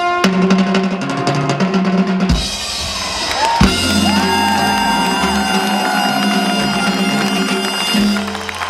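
Live Cuban band with trumpets, upright bass, congas, timbales and drum kit playing a rapid drum fill, then a cymbal crash about two seconds in. The band then holds a long chord over a drum roll and cymbals, the ending of the tune.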